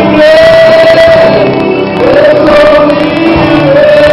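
A group of voices singing along to loud music, holding long notes of a second or more. The sound is loud throughout.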